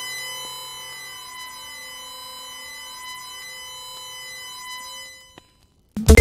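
Synthesizer drone for a logo intro: a held chord of steady electronic tones with a slow, sweeping shimmer, fading out about five seconds in.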